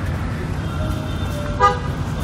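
Low rumble of street traffic, broken about one and a half seconds in by a single short vehicle horn toot.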